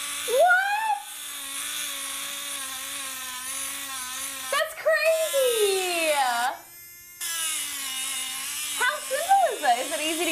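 Battery-powered Engrave-It Pro engraving pen buzzing steadily, a sound like a drill, as its tip scratches into the lid of a tin can. The buzz cuts out for a moment about seven seconds in, then starts again.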